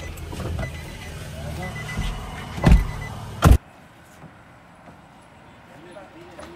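Low rumble inside a car with scattered knocks, then two loud thumps close together; the sound then cuts off abruptly to a much quieter outdoor background with faint voices.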